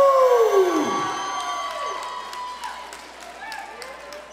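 Crowd cheering and whooping: a long "woo" falling in pitch over the first second, then shorter whoops and scattered claps, fading toward the end.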